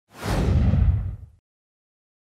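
Whoosh sound effect with a deep rumble underneath, about a second long, fading out.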